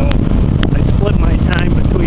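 A man talking over a loud, steady low rumble, with a few sharp crackles, one just after the start and a pair about a second and a half in.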